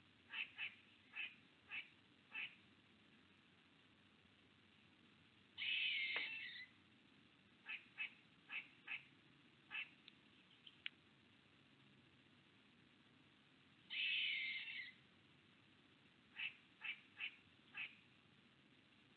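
An animal calling: groups of four or five short sharp calls, broken twice by a longer harsh call about a second long, near the middle and about three-quarters of the way through.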